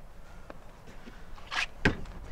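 Plastic Vaseline jars being handled on a plastic folding table: a faint tick, a short rustle, then a sharper knock near the end as a jar is set down on the tabletop.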